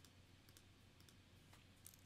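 Near silence: room tone with a few faint, short clicks spread through it, about four in two seconds.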